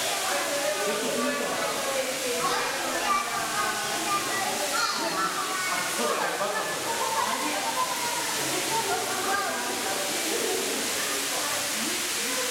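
Indistinct chatter of several people's voices in a large, echoing hall, over a steady rushing hiss.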